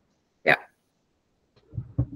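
A single short vocal sound, like a clipped syllable or hiccup-like catch of the voice, about half a second in, heard over a video-call line that is otherwise silent. A faint breath or murmur comes near the end, just before talk resumes.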